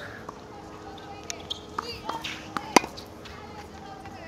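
Tennis balls being struck with rackets and bouncing during a rally: a few faint pocks, then one sharp, loud racket hit nearly three seconds in.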